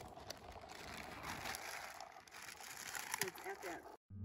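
Faint rustling, crinkling and scattered clicks of camp cooking gear being handled, with a brief 'yeah' near the end.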